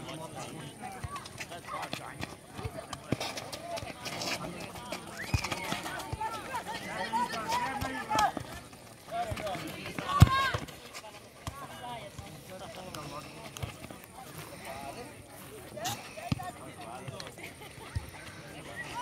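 Futsal match on an asphalt court: sharp kicks of the ball, the loudest about ten seconds in, over running footsteps, with players and onlookers calling out in bursts.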